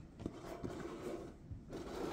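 Faint handling of cardboard packaging boxes on a wooden table: a few light scrapes and soft knocks as the boxes are touched and moved.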